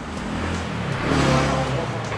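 A road vehicle passing by: its engine and tyre noise swell to a peak and then fade.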